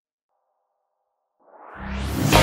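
Near silence for about the first second and a half, then a synth swell that grows quickly louder and brighter near the end, running into the synthwave track as it comes back in.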